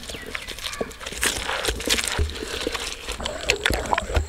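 Traditional stone grinder crushing shallots: the heavy stone pestle knocking and grinding against the stone basin in irregular clicks, with a couple of dull low knocks.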